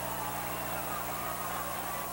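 Steady background noise of an old videotaped football broadcast: hiss and a low electrical hum, with faint stadium crowd noise underneath.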